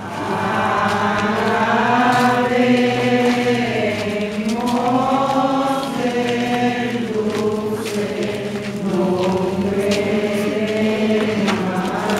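A procession crowd singing a devotional hymn together in unison, in slow, drawn-out phrases.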